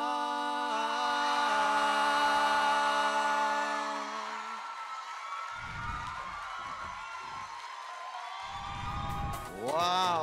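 Two male singers with an acoustic guitar hold a final sung note that fades out after about four seconds. It is followed by deep, low swells and, near the end, a swooping rising-and-falling electronic tone from the show's transition music.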